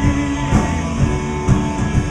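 A rock band playing live: electric guitar and drum kit, with the drum strikes landing about every half second.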